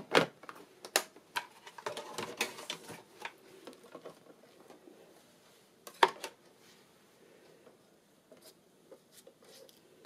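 Clicks and knocks of a die-cutting machine's plastic platform and metal plates being handled, with a short clatter around two to three seconds in and a sharp clack about six seconds in.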